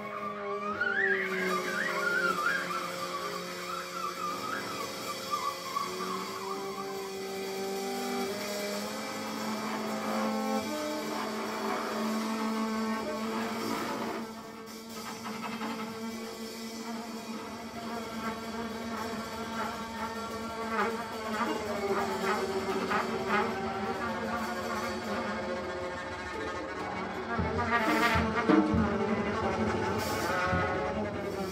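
Live free-improvised jazz: double bass and trumpet hold long, wavering tones, with a flute trilling in the first few seconds. The playing grows louder and busier near the end.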